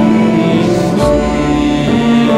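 Live orchestral music: bowed strings and a saxophone holding sustained chords, with the harmony changing about a second in and again near the end.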